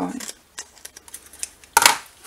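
Scissors snipping through the paper edge of a handmade scrap envelope, a few small sharp clicks, then a brief loud burst of paper noise near the end as the envelope is picked up.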